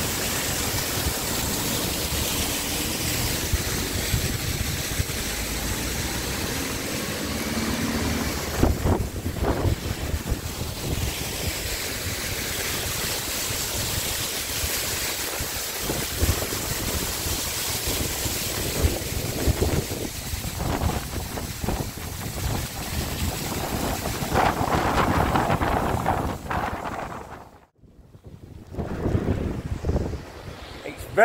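Mountain waterfall rushing steadily down rock, with gusts of wind buffeting the microphone. The sound cuts out for a moment near the end, and the wind noise then comes back.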